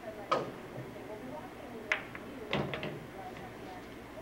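Pool cue tip striking the cue ball with a sharp click, then about a second and a half later a single ball-on-ball click, and a quick cluster of clicks and knocks from balls striking and dropping around two and a half seconds in.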